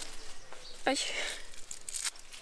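Soft rustling of clothing and bedding as someone stretches and moves about inside a tent: a brief scuffing hiss just after a short exclamation, about a second in.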